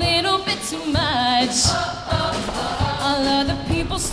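A female soloist singing through a microphone over live band accompaniment with a steady drum beat; her held notes carry a wide vibrato.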